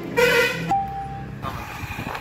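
A brief spoken word, then a single steady electronic beep from a cash machine's keypad lasting under a second. After it comes outdoor street noise of passing traffic.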